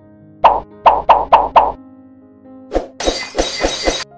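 Background music under a quick run of five wet plops about half a second in, then one more plop and, near the end, a second of hissy noise with further plops: a spoon stirring and scooping through thick, oily meat stew.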